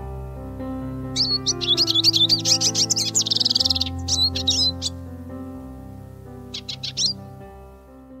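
Siskin singing over soft background music: a fast, high twittering warble with a buzzy trill in the middle, then a short second phrase near the end. The music is slowly fading.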